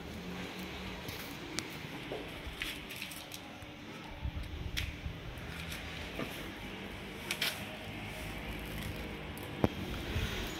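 Faint handling noise with a few soft clicks as the car's driver's door is handled, then one sharp click just before the end.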